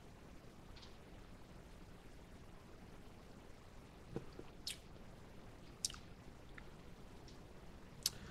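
Faint drinking and tasting sounds: a man swallowing a sports drink from a plastic bottle, then a few soft mouth clicks as he tastes it.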